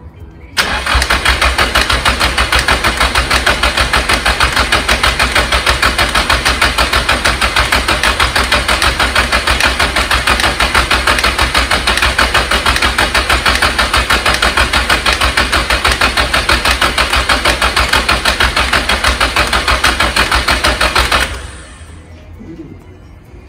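A Nissan SR-series inline-four is turned over on its starter motor with the ignition disabled, so it cranks without firing. It churns with an even pulsing for about twenty seconds, starting half a second in and cutting off near the end, with a カッチン-カッチン ticking in it. The cranking is to bring up oil pressure on a fresh engine swap, and the owner suspects the ticking is a collapsed hydraulic lash adjuster.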